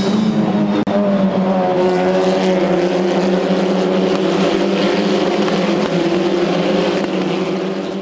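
Formula 4 race car engines running at high revs, a steady pitched drone that drifts slightly, mixed with background music, fading out near the end.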